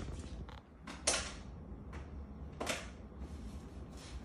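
A golden retriever's paw scraping and dragging a plastic food container across a kitchen countertop: two short scrapes, about a second in and again a second and a half later.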